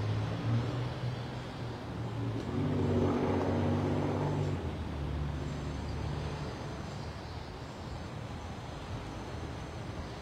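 Road traffic: a steady low engine rumble, with one vehicle passing and swelling louder about three to four seconds in.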